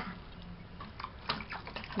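A child's hands splashing in water in a small plastic cup: a string of light splashes and taps, coming more often in the second half.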